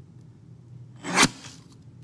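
Paper trimmer blade drawn once through cardstock about a second in: a short scraping cut that rises and ends sharply.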